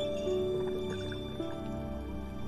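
Slow, soothing piano music with long held notes that change twice.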